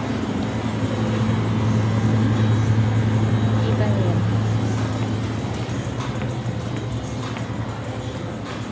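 Indoor shop ambience: a steady low hum, fading from about five seconds in, under a haze of background voices.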